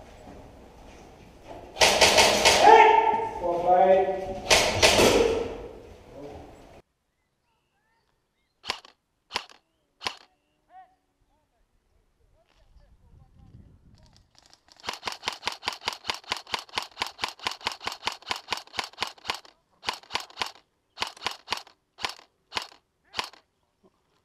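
Airsoft M4 electric rifle shooting: a few single shots, then a fast full-auto burst lasting about four and a half seconds, then short bursts and single shots. Before the shots, a loud voice shouts for several seconds.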